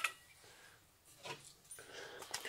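Near quiet room tone, with a faint brief knock about a second and a quarter in and faint handling noise near the end as tools and a wooden piece are moved about.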